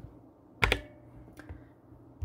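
Two short clicks of a computer key being pressed: a sharp, louder one under a second in and a fainter one about three-quarters of a second later.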